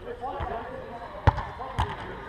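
A footvolley ball struck twice in play, two sharp hits about half a second apart, the first the louder.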